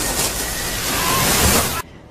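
Loud, dense rushing noise like a blast of wind and flying debris, a film sound effect, which cuts off suddenly near the end.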